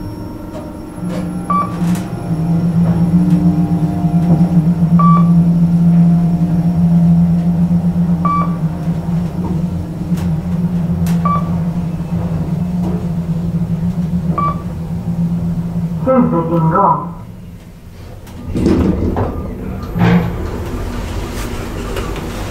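Passenger lift car travelling downward with a steady low hum, and a short, high beep about every three seconds. Near the end the hum stops as the car comes to rest, a brief signal sounds, and the doors slide open.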